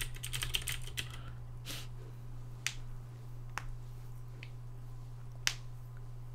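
Typing on a computer keyboard: a quick run of keystrokes in the first second, then single key clicks spaced about a second apart. A steady low hum runs underneath.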